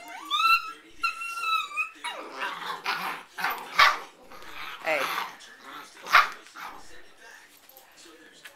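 Afghan hound puppies yipping and barking as they play-fight. A high, wavering whine-like yelp comes in the first two seconds, then a run of sharp, high-pitched barks, the loudest about four and six seconds in.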